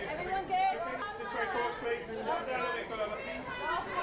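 Several people talking at once: overlapping voices and chatter, with no single voice standing out.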